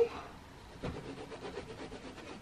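Faint scratching of a pencil on canvas as sketch lines are traced, with a soft knock a little under a second in.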